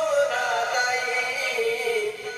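A man singing a Bengali song to musical accompaniment, holding one long note that slowly falls in pitch.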